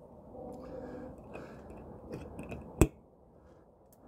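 Wire bail clamp of a glass swing-top jar snapping shut to seal the lid: one sharp click about three-quarters of the way in, after faint handling sounds.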